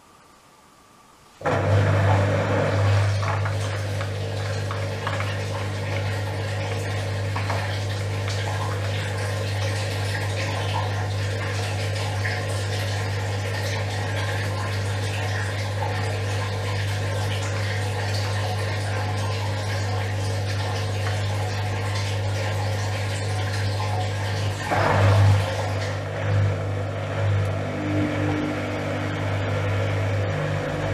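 Gorenje WA72145 front-loading washing machine: water starts rushing through the machine abruptly about a second and a half in, over a steady low hum, while the drum stands still. Near the end the sound turns uneven and the drum motor starts up with a steady tone, tumbling the wash.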